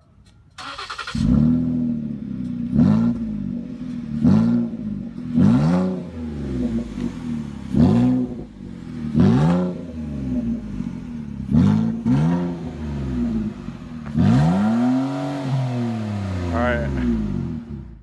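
A 2013 Ford Explorer's 3.5-liter V6 with its mufflers cut off, revved in a series of quick blips about every second and a half, each rising and falling in pitch. It starts about a second in and ends with one longer rev near the end.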